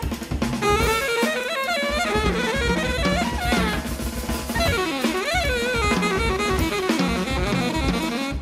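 Alto saxophone playing a fast, winding solo line over a drum kit, with a quick rise and fall in pitch about five seconds in.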